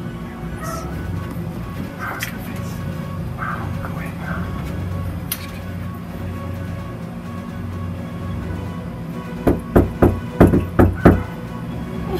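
Knuckles knocking on a front door: about seven quick knocks in a row near the end, over steady background music.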